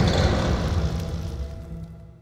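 Low rumble left by an animated explosion, with a sustained low tone under it, fading steadily away.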